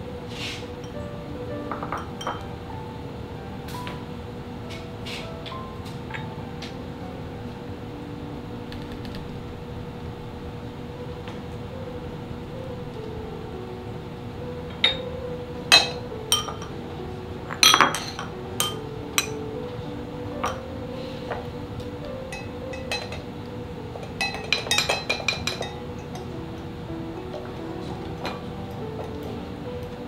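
Soft background music with a steady melody; in the second half, sharp clinks of metal kitchen utensils (a small whisk and sieve) against a glass measuring jug, a few separate clinks and then a quick run of them as the egg-yolk mixture is stirred.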